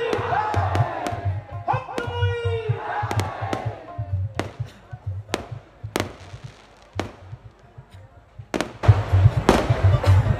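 Live qawwali: a singer's long, wavering held notes over a low hand-drum beat. The drum then drops out for a quieter few seconds broken by single sharp cracks about once a second, and loud drumming comes back near the end.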